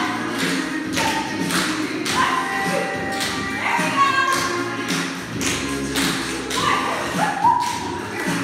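A song with a steady beat plays while a group of tap dancers' metal-tipped tap shoes clatter on a wooden floor.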